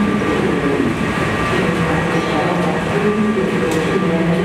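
Washington Metrorail subway train at an underground station platform: a steady rumble with humming motor tones that drift slightly in pitch.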